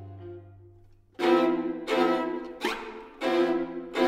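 String quartet playing a tango. A held low note fades away, then a little over a second in the strings strike a run of sharp, accented chords, about one every two-thirds of a second.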